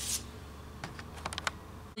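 Light clicks and taps of drafting tools being handled on pattern paper: a pen, a tape measure and a plastic ruler. There is a brief scrape at the start, a few single clicks, then a quick cluster of clicks a little after a second in.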